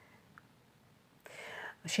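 Near silence, then, about a second and a quarter in, a short breathy whisper from a person's voice, without voiced tone, just before speech resumes.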